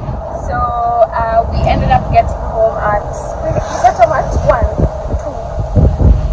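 A woman's voice, talking or singing in short phrases, over the steady low rumble of a moving car heard from inside the cabin.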